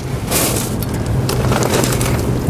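Short hiss of an aerosol lubricant spray can fired through its red extension straw, about half a second in, over a steady low hum.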